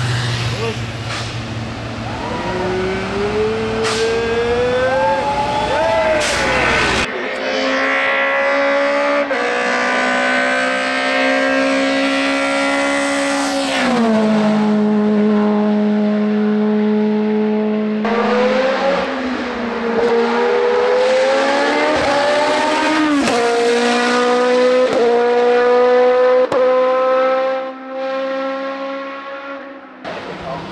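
Racing car engines at full throttle climbing a hillclimb course, each revving up and then dropping in pitch at an upshift, with a clear shift about halfway through. The first few seconds hold a deeper, steadier engine drone with a slowly rising whine.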